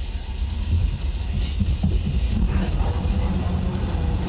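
Low, steady rumble of road and wind noise inside the cabin of a Tesla Model S Plaid travelling at about 100 mph.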